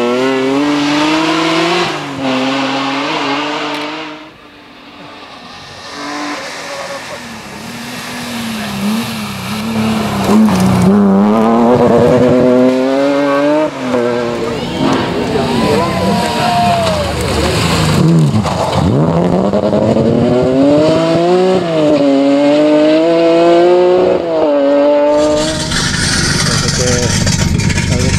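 BMW M3-engined straight-six rally car revving hard, its pitch climbing and dropping again and again through gear changes as it passes at stage speed. The pitch plunges as it sweeps by about two-thirds of the way in. Near the end the engine gives way to a steady hissing background.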